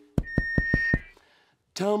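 A microphone tapped about six times in quick succession, each tap a dull thump through the sound system, with a steady high beep-like whine sounding over them. The tapping is a check on a microphone that is not working.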